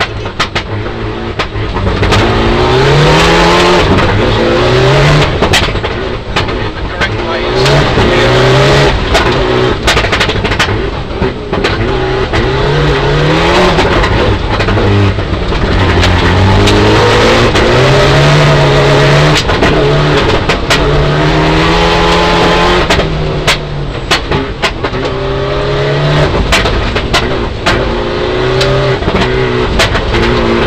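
Mitsubishi Lancer Evolution IX rally car's turbocharged four-cylinder engine, heard from inside the cabin, revving hard and repeatedly climbing in pitch through the gears, then dropping on lifts and shifts. Sharp clicks of gravel are thrown against the underbody.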